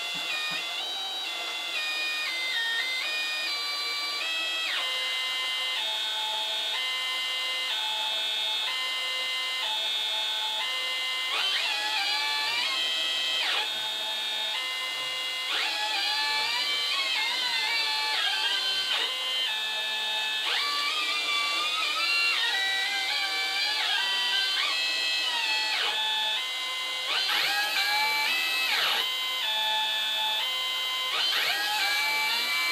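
Stepper motors of a hobby CNC router playing a melody: each move sounds as a steady note, the pitch stepping from note to note. From about twelve seconds in, quick rising and falling sweeps come between the notes as the motors speed up and slow down.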